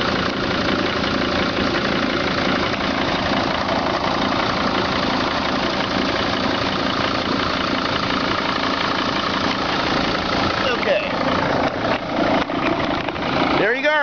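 2003 Dodge Sprinter's five-cylinder turbodiesel idling steadily, heard close up from under the van and at the engine bay.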